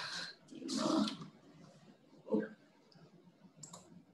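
A person sighing into a computer microphone, a breath in and then a longer breath out, followed a little after two seconds by a brief low sound and, near the end, a couple of light clicks of a computer mouse.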